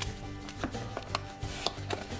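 Cardboard phone box and its white inner tray handled by hand, giving several sharp taps and clicks as the pieces knock together, over steady background music.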